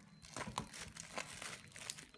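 Black plastic courier bag crinkling and tearing as it is slit open with a utility knife, in a string of short, irregular crackles.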